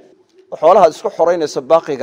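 A man speaking in a lecture, starting about half a second in after a short pause.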